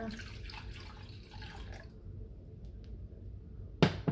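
Water pouring from a glass measuring cup into a glass bowl for about two seconds. Near the end comes a single sharp knock as the glass measuring cup is set down on the glass cooktop.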